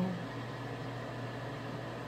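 Steady low hum with a faint even hiss and no distinct events.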